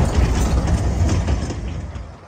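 Narrow-gauge railway carriages rolling past at close range: a low rumble of wheels on rails with a few light clicks, fading near the end.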